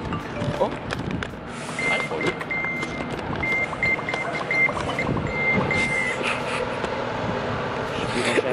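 A vehicle's reversing alarm beeping at one high pitch in quick repeated pulses for about four seconds, starting about two seconds in, over street traffic noise.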